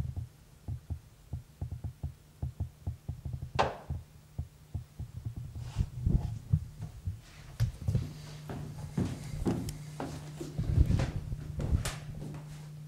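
Handling noise from a handheld camcorder carried low by someone walking: a quick run of soft low thumps, a sharp click a few seconds in, then louder scattered knocks and clicks, over a steady low hum.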